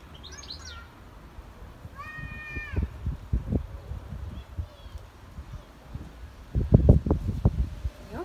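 Gusts of wind rumbling on the microphone, loudest about seven seconds in. A single held animal call of under a second sounds about two seconds in, after a few brief high chirps at the start.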